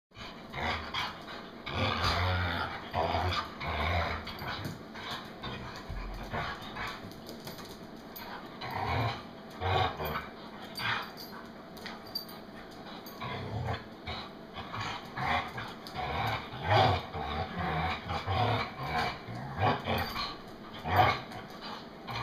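Two dogs play-fighting, growling and snarling at each other in irregular bursts throughout.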